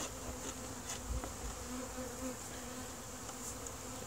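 Honeybees buzzing around open hives: a faint, steady hum whose pitch wavers slightly as bees fly about.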